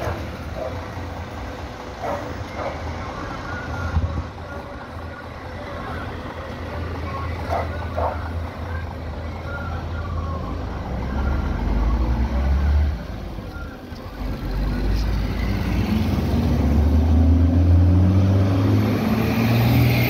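Diesel engine of a coach bus pulling away and fading down the street, then a car passing close by about halfway through. Near the end a low engine rumble builds again as more traffic approaches.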